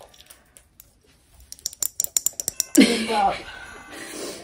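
Freeze-dried strawberry pieces rattling and clicking in a small clear container as it is shaken, a quick run of light clicks lasting about a second, starting about halfway through. A short laugh follows near the end.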